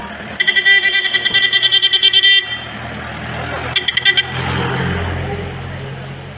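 A vehicle horn sounding in a fast warbling pulse for about two seconds, then again in a short burst near the four-second mark, over crowd chatter and traffic noise.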